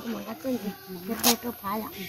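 Women talking in low voices, with one short sharp crackle about a second in.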